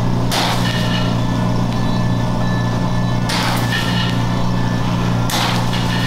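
Liposuction suction pump running with a steady hum while fat is drawn through the cannula and tubing, with three brief hissing rushes of suction: just after the start, about three seconds in, and near the end.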